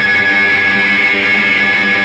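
Loud electric guitar holding one steady, droning chord at the start of a rock song.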